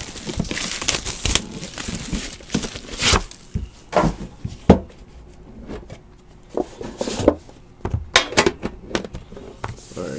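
Plastic shrink wrap being torn and crinkled off a sealed trading-card hobby box, with the cardboard box being opened and handled. Several sharp knocks stand out among the crackling, the loudest about halfway through.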